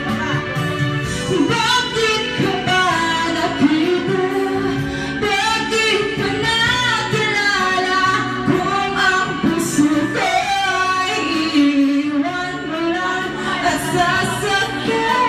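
A woman singing a melody into a handheld microphone, her voice carried through a sound system, with held, sliding notes throughout.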